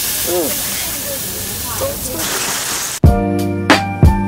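Slices of beef sizzling on a hot flat-top griddle, a steady hiss, with faint voices in the background. Music cuts in suddenly about three seconds in.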